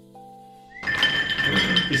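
Soft background music with held, plucked-sounding notes fades out, then, about a second in, hard crunchy snack pieces clatter and clink onto a plate as they are tipped out of a crinkling plastic bag.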